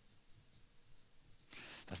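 Faint scratchy rustling of fingers scratching hair during a pause in speech. Near the end comes an intake of breath and a man's voice starting a word.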